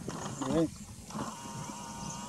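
A person's voice calling out briefly, then a long steady whistle-like tone that starts a little over a second in and holds.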